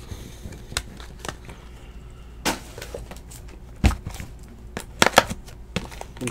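Cards and a sealed cardboard hobby box being handled on a table: scattered light taps and clicks, a dull thump a little before four seconds in, and a quick cluster of clicks about five seconds in.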